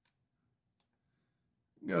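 Two faint computer mouse clicks about three-quarters of a second apart.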